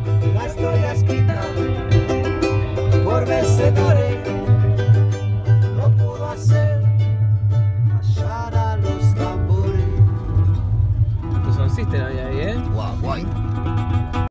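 Strummed acoustic guitar playing the closing bars of a song, without singing, over a steady low hum.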